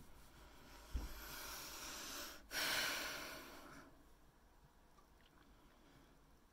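A woman breathing close to the microphone: one breath in and one breath out, each about a second and a half long, the first starting with a soft low bump.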